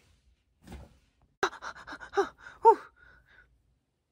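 A person's short gasps and grunts, several in quick succession, played as straining effort, with a sharp click just before them about a second and a half in.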